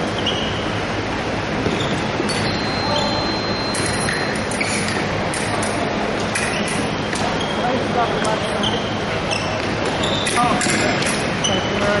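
Background chatter in a large gym hall, with short high squeaks and light taps from fencers' shoes working on the wooden floor during their footwork.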